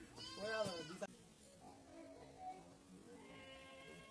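An animal calling once: a single wavering call of about a second, then only faint background sound.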